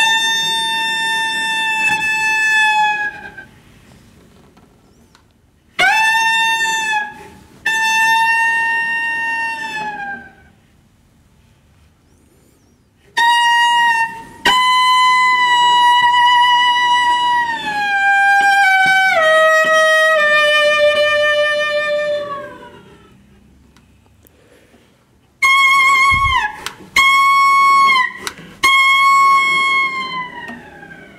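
Cello bowed in slow, high sustained notes, played as a kind of requiem: separate phrases with short pauses between, a long phrase in the middle stepping downward with vibrato, and shorter notes near the end.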